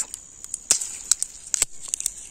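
A handful of sharp snaps and crackles of dry pigeon pea pods being handled and broken open, bunched in the second half, over a steady high insect buzz.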